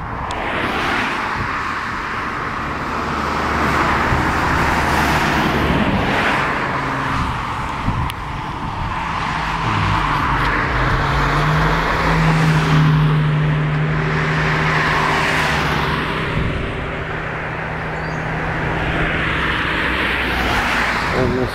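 Road traffic: several cars passing one after another, their tyre noise swelling and fading. Partway through, an engine hum rises in pitch and holds steady for several seconds.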